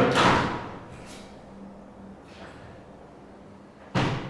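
Blackout roller blind on a roof window being pulled along its rails: a short noisy burst at the start that dies away within half a second, then quiet, and a sharp click at the very end.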